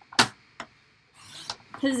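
Paper trimmer: a sharp click as the blade carriage is set, then a brief rasp as the blade slides down its track and cuts a strip of paper, about a second and a half in.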